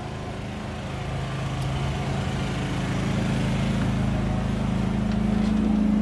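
Steady engine-like motor drone that grows gradually louder, its pitch shifting higher in the second half.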